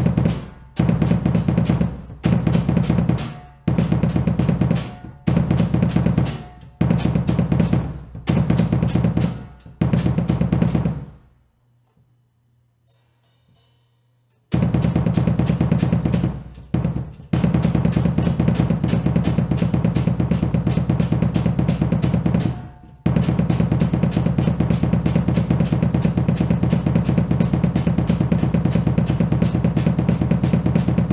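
Double bass drum pedals playing rapid, even strokes on a kick drum. It comes first in short bursts of about a second with brief gaps between, then stops for about three seconds, then runs on long and nearly unbroken.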